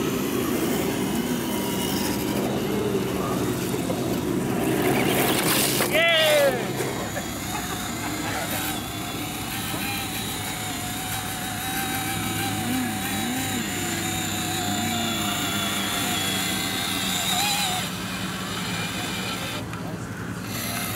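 Electric motors and geartrains of radio-controlled scale crawler trucks whining as they crawl, rising and falling with the throttle, with a louder burst about five seconds in that ends in a falling whine. People talk in the background.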